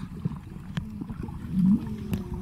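Muffled underwater sound from a camera held in the sea: low gurgling and bubbling water with small clicks, and a louder gurgle about one and a half seconds in.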